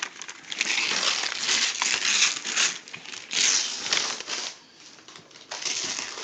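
Christmas wrapping paper being ripped and crumpled off a boxed present: a run of tearing and crinkling for about four seconds, a short lull, then more crinkling near the end.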